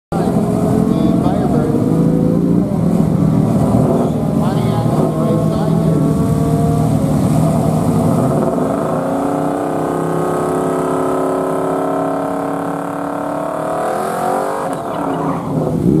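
Pontiac Firebird drag car doing a burnout. The engine runs unevenly at first, then is held at high revs for several seconds while the rear tyres spin and smoke. The revs waver and drop near the end.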